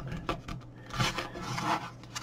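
Hands handling the plastic rear housing of an AcuRite Atlas touchscreen display: soft rubbing and scraping on the case, with a few small clicks.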